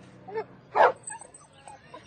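A dog yelping and whimpering, with one sharp, loud yelp a little under a second in.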